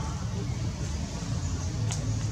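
Steady low outdoor rumble under a faint hiss, with one short sharp click near the end.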